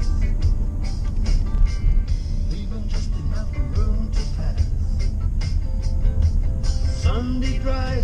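A song with vocals playing on the car stereo, heard inside the cabin over the steady low rumble of the car on the road.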